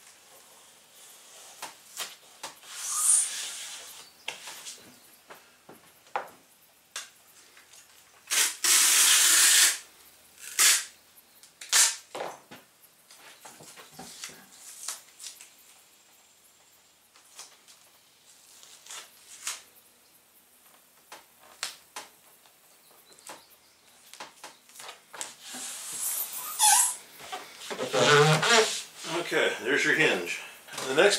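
Fiberglass-reinforced packing tape being pulled off the roll: a long, loud rip about nine seconds in, with shorter tearing hisses near the start and near the end. Scattered clicks and taps of the tape and panels being handled run between them.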